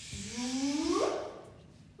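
A person imitating a cow's moo: one drawn-out vocal call of about a second that rises in pitch and then stops.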